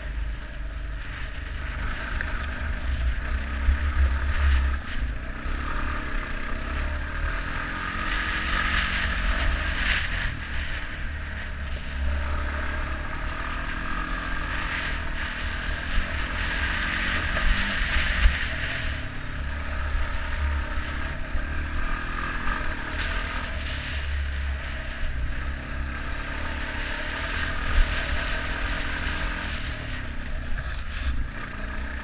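ATV engine running steadily as the quad rides a rough dirt trail, under a heavy low rumble, with short rattles and scrapes from bumps along the way.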